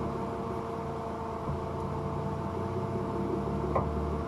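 Nissan Laurel C33's RB20DET turbocharged straight-six idling steadily, with a single brief click near the end.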